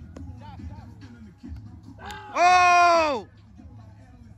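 A person's long, loud shout a little past the middle, over faint scattered shouts from players across the field and a steady low rumble.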